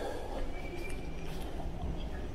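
Tyne and Wear Metro train rumbling in the underground station, with a brief high wheel squeal about half a second in.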